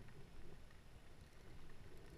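Faint steady hiss of rain falling on the water, with low wind rumble on the microphone.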